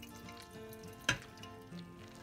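Soft background music with one sharp metallic click about a second in: a metal spatula striking a steel colander as boiled soy is pressed to drain its water.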